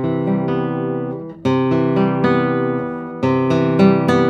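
Daniele Marrabello 2023 No. 165 classical guitar, a spruce-top, Indian rosewood guitar, played loud. Three strong chords are struck, at the start, about a second and a half in and about three seconds in, each ringing on with long sustain.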